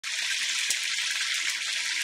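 Hot cooking oil with bay leaves sizzling and crackling in a pot, with one sharper pop less than a second in.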